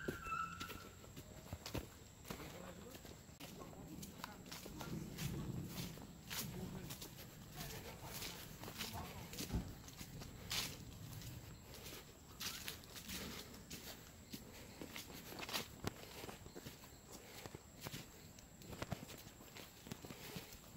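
Footsteps of someone walking on a grassy dirt track, with irregular scuffs, rustles and clicks of handling noise, and a faint murmur of voices in the distance.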